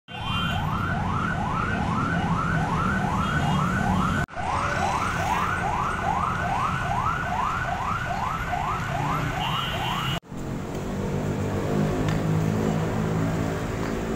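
An emergency-vehicle siren on a fast repeating rising yelp, about three sweeps a second, over road traffic rumble. The siren cuts off about two-thirds of the way through, leaving traffic and engine noise.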